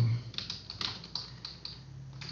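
Typing on a computer keyboard: a string of separate keystrokes at an uneven pace, about half a dozen in two seconds.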